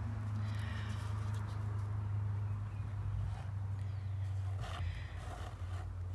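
A steady low hum, with a faint rustling hiss over it in the first couple of seconds.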